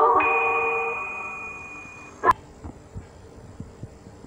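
The commercial jingle's last held note and a high chime ring out and fade away over about two seconds, followed by a single sharp click just past the middle; after that only low hiss remains.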